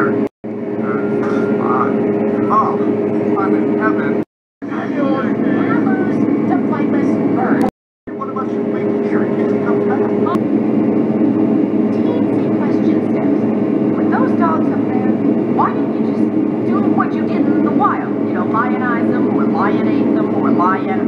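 Soundtrack of an animated film: a steady low rumbling drone with faint voices and short chirping sounds over it. The sound cuts out completely three times, each for a moment.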